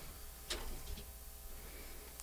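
Quiet handling noise as studio headphones are swapped. There is one short click about half a second in, over a low steady hum.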